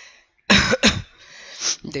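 A man coughing twice in quick succession, starting about half a second in.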